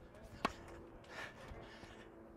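A single sharp pop of a tennis ball impact about half a second in, over a faint steady hum.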